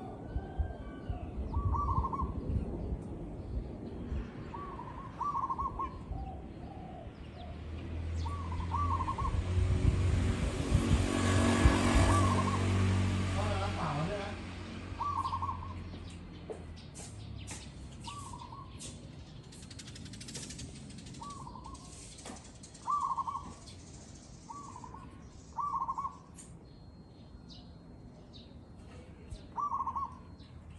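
Zebra dove cooing: short clusters of quick soft notes, repeated every two to three seconds. A louder low rumble swells and fades in the middle, partly covering the calls.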